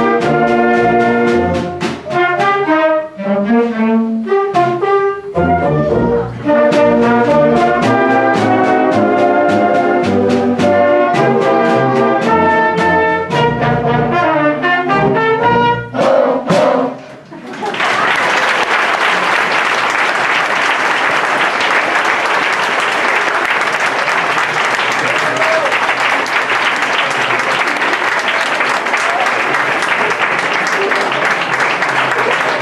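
Student orchestra of strings, bassoons and brass playing the closing bars of a piece, ending a little past halfway. The audience then breaks into steady applause that lasts to the end.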